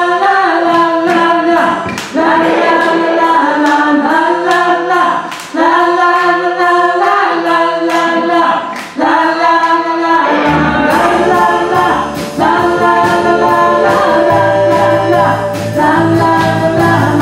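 Music: sung vocals on long held notes over a steady percussive beat, with a bass line coming in about ten seconds in.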